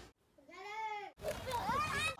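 A child's voice: one drawn-out call that rises and falls in pitch, then, after a short break, more voice sounds gliding up and down.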